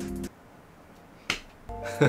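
Short added sound effects over a quiet room. A brief tone is heard at the start, a single sharp snap-like click a little past a second in, and a steady chord-like tone near the end.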